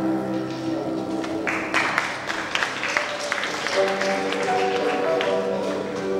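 Acoustic guitar played solo, notes ringing at the start and again over the second half. About a second and a half in, a patch of scattered clapping lasts about two seconds over it.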